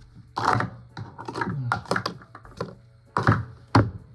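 Plastic sport-stacking cups clattering in quick, irregular clicks as a cup pyramid is brought down into stacks on the stacking mat. Two loud knocks come near the end.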